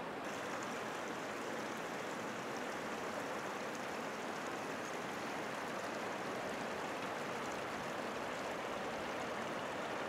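Steady outdoor rushing of wind and the rippled surface of a mountain lake, with no distinct events.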